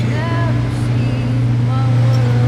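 A steady low hum underlies a man's voice, which trails off in the first half-second.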